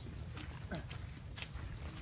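Footsteps and a wooden walking stick on loose broken brick rubble, a few sharp taps and scrapes over a low steady rumble.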